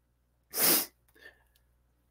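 A man's single short, noisy breath about half a second in.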